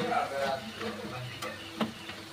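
Jalebis frying in a pan of oil, a light steady sizzle, while a thin metal stick stirs and turns them against the pan, with a couple of sharp clicks of the stick on the pan in the second half.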